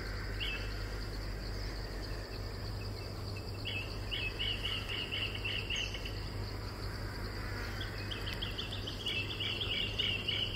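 Insects chirping outdoors: a steady high-pitched drone with two runs of rapid chirps, about four a second, one in the middle and one near the end, over a low steady hum.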